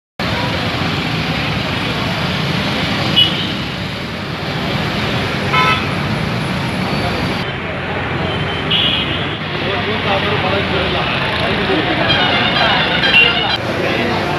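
Busy roadside noise: steady traffic with overlapping crowd chatter, and a few brief high-pitched toots scattered through.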